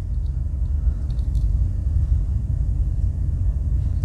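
A steady low background rumble, with a few faint light clicks in the first second and a half from a Swiss Army knife being handled.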